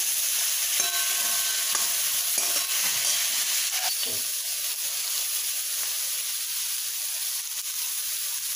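Potato, pea and brinjal bhaji sizzling in oil in a kadhai, with a steady hiss. A steel ladle scrapes and knocks against the pan as the vegetables are stirred, with the knocks mostly in the first half.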